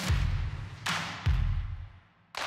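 Outro sound effects: a rising swell breaks into a deep booming hit with a bright crash, followed by two more hits, one just before a second in and one soon after, each dying away.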